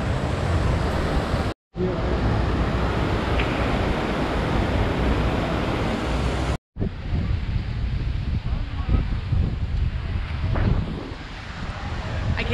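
Wind buffeting the microphone: a steady rushing noise with low rumbling gusts, broken twice by a brief moment of silence.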